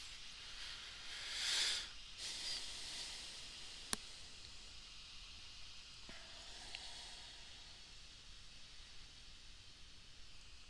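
Faint microphone hiss with one breath, an exhale into the microphone, about a second and a half in, and a single sharp click near four seconds.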